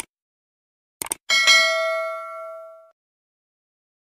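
Subscribe-button animation sound effect: a mouse click, then a quick double click about a second in, followed by a notification-bell ding that rings and fades away over about a second and a half.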